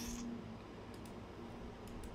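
A few faint computer mouse clicks over low, steady room hum: the loudest right at the start, two lighter ones about a second in and near the end.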